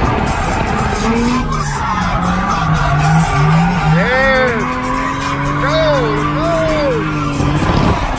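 Car engine running, heard from inside the cabin, with several short tyre squeals that rise and fall in pitch in the second half.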